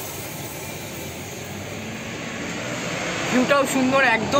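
Road traffic noise from the street below, a steady rushing that slowly grows louder as if a vehicle is approaching. A voice starts near the end.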